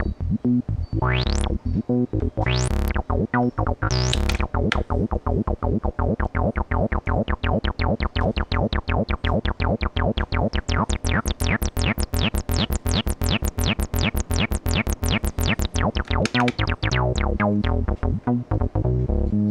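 Abstrakt Instruments Avalon Bassline, an analog TB-303 clone, playing a fast sequenced acid bassline of short repeating notes on a twelve-step loop. Its resonant filter is swept by hand: three sharp rising squelches in the first few seconds, then the filter opens gradually until the notes are at their brightest in the middle, and closes again near the end.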